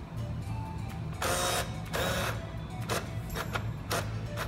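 Jofemar JF8 coin changer running its start-up self-initialization after a software update: two short mechanical whirs of its internal mechanism a little after a second in, followed by a few sharp clicks near the end.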